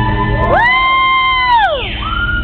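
Acoustic guitar playing live through a concert PA, with an audience member's loud whoop over it: a high "woo" that rises about half a second in, holds for about a second, then slides steeply down near the end.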